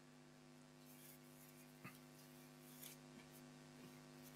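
Near silence: a faint steady electrical hum, with a few soft clicks or rustles.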